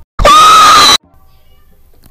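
A short, very loud, high-pitched scream: a quick rise to one held note that cuts off sharply after under a second.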